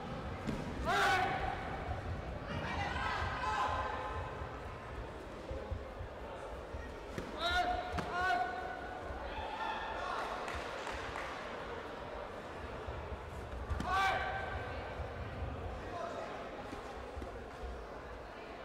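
Taekwondo sparring: the fighters' short sharp shouts (kihap) with their attacks, the loudest about a second in, near the middle and about two-thirds through, with thuds of kicks and feet on the foam mat. Voices murmur across the echoing hall underneath.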